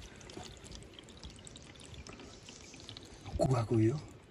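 Spring water trickling from a rock seep into a plastic bottle held against the stone, a faint steady pouring with small drips.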